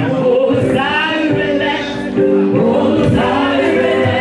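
Gospel choir singing with keyboard accompaniment.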